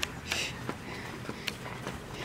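A few short, breathy sniff-like noises close to the microphone, with light footsteps on a concrete driveway.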